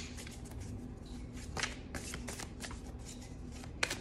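A deck of crystal oracle cards being shuffled by hand: a run of soft, irregular card clicks and slaps, with a few sharper snaps, one near the end.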